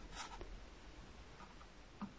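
Faint rustling and a few light ticks of a paper cup and plastic drinking straws being handled.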